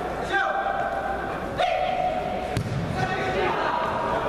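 Players shouting long held calls to each other, echoing in a large indoor sports hall, with a single sharp thump about two and a half seconds in.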